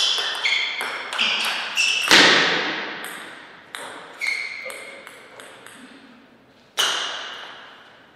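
Table tennis ball clicking off bats and table in a fast rally, with echoing tails, ending in a much louder, heavier hit about two seconds in. A few scattered lighter ball clicks follow, then one more sharp click near the end.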